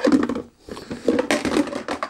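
Hard white plastic pots and a bucket lid being handled: irregular rustling, scraping and light knocks of plastic on plastic as the containers are lifted out of a nappy bucket.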